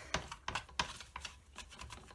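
Wad of paper towel dabbed and rubbed over an inked clear stamp on its clear plate, making a run of light irregular taps and rustles that thin out after about a second.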